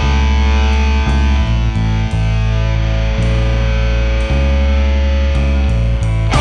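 Rock band playing an instrumental passage: distorted electric guitar chords over heavy, sustained bass notes that change about once a second.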